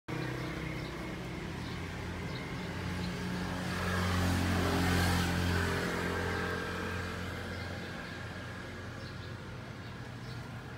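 A motor vehicle's engine passing by, its hum growing louder to a peak about halfway through and then fading away.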